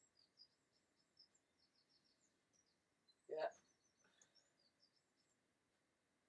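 Near silence with faint bird chirping, a scatter of short high chirps. One brief voice sound, a short murmur or breath, about three seconds in.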